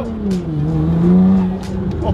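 Nissan GT-R R35's twin-turbo V6 heard from inside the cabin while driving. The engine note dips at the start, climbs steadily as the car accelerates, then drops again near the end as it shifts up.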